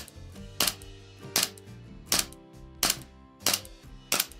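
A WE P08 Luger green-gas blowback airsoft pistol firing single shots, about six of them evenly spaced, roughly one every 0.7 s. Each is a sharp crack as the gas fires the BB and cycles the toggle.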